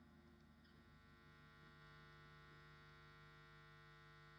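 Near silence with a faint steady electrical mains hum.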